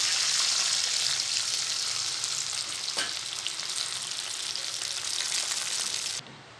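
Tamarind liquid poured into hot oil and tempering spices in an iron kadai, sizzling loudly and easing off a little as it goes on. A single light knock, likely the wooden spatula, comes about halfway through.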